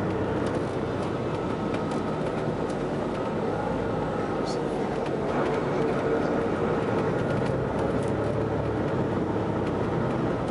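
Interior sound of a moving Prevost X345 coach: its Volvo D13 diesel engine and road noise make a steady drone, with light rattles from the cabin, swelling slightly about six seconds in.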